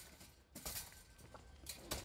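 Near quiet, with a short faint rustle a little over half a second in and a few faint clicks.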